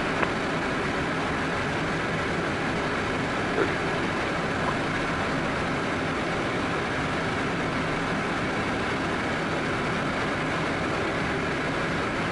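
Steady, even cockpit noise of a Cessna Citation M2 twin-turbofan business jet in flight: airflow and engine noise at a constant level.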